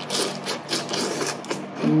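Rice vermicelli noodles being slurped into the mouth: a quick run of wet sucking and smacking noises.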